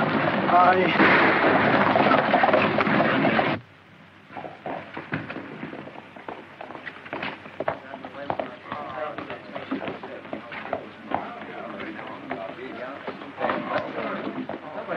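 Film soundtrack: a loud, dense passage that cuts off abruptly about three and a half seconds in, then a quieter outdoor bed with scattered sharp knocks and faint background voices.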